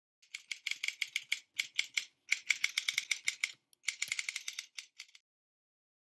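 Typing sound effect: keyboard keys clicking quickly, about seven a second, in three runs with short breaks, stopping about five seconds in.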